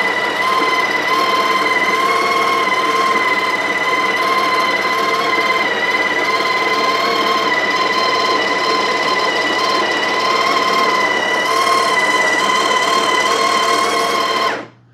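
Breville Barista Express's built-in conical burr grinder running steadily, a loud motor whine holding one pitch as it grinds coffee beans into the portafilter. This is the automatic dose cycle, started by pushing the portafilter against the grinder's switch.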